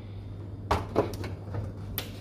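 A few light clicks and knocks as a plastic food container is set inside a microwave oven and the microwave's door is swung shut by hand, over a steady low hum.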